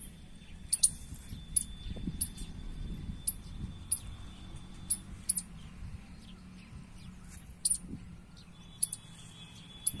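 Outdoor field ambience: short, very high-pitched chirps repeating irregularly about once or twice a second, with a faint steady high whine, over a low uneven rumble.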